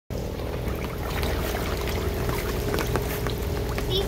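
Outdoor ambience over a pool of water and water beads: a steady low rumble with a faint steady hum, and scattered light ticks of water on the surface.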